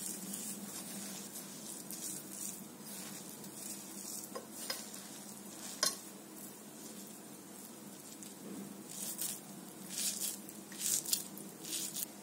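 Hands mixing and squeezing coarsely ground dal with moringa leaves and chopped onion in a metal bowl: a dry rustling and crunching, with a couple of sharp clicks against the bowl near the middle and louder rustles near the end.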